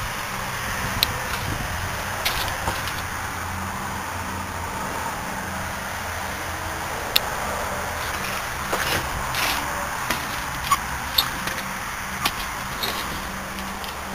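A steady low hum under outdoor background noise, with scattered light clicks and knocks.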